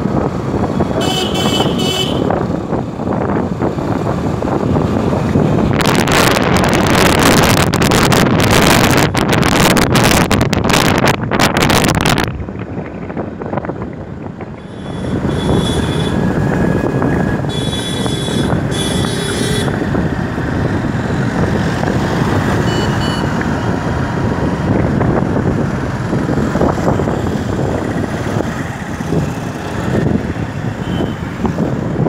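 Road traffic heard from a moving vehicle, with vehicle horns honking near the start and again several times around the middle. Wind buffets the microphone for several seconds early on, then the steady traffic and engine noise continues.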